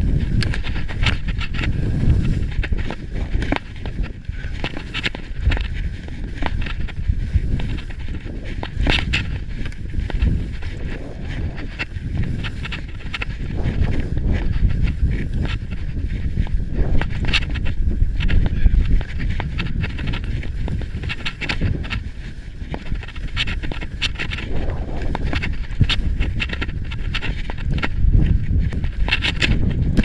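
Skis scraping and hissing over snow through a run of turns, with irregular sharp scrapes, under heavy wind rumble on the action camera's microphone.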